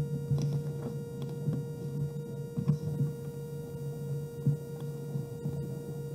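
A steady low hum with a second, higher steady tone, with faint scattered knocks and rustles over it.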